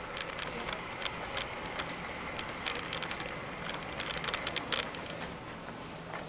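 Electric wheelchair rolling along a hard corridor floor: a steady motor hum with many small clicks and rattles, thickest about four to five seconds in.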